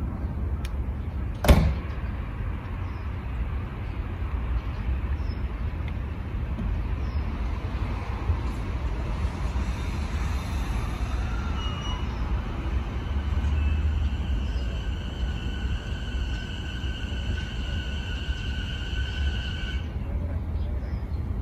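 JR East E233-5000 series electric train idling, then creeping slowly along the platform toward a coupling. A steady low rumble runs throughout, a single sharp knock comes about a second and a half in, and a steady high whine sets in about twelve seconds in as the train starts to move.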